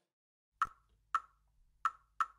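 Three sharp, dry percussion clicks, about half a second apart, opening a music track after a brief silence.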